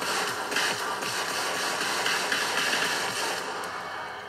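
Live stadium concert audio of a pop show, a noisy electronic music passage with the beat dropped out.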